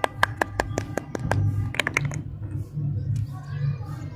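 Crisp clicks and crackles of a wrapped lollipop being handled, several a second for about two seconds, then softer rustling, over quiet background music.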